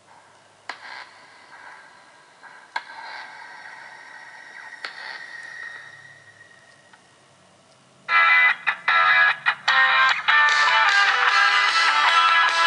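Music from a YouTube video playing through a Samsung Galaxy S4's loudspeaker inside a Seidio Obex waterproof case, as a test of the case's sound. It opens with faint sound effects and a few clicks, then loud music comes in about eight seconds in, breaking off briefly a few times before running steadily.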